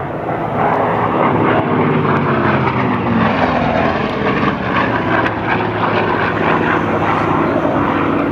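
Hawker Sea Fury's radial engine and propeller running loud on a low, fast diving pass. The engine note falls in pitch as the aircraft goes by.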